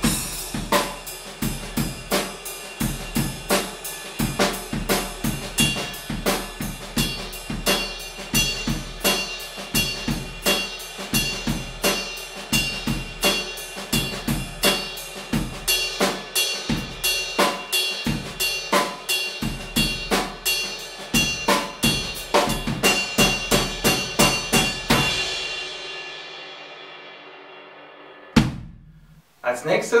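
Ride cymbal played in a steady jazz ride pattern on its bow, about three strokes a second, its ringing wash carrying over light drum-kit accompaniment. The playing stops a few seconds before the end and the cymbal rings out, followed by one short click.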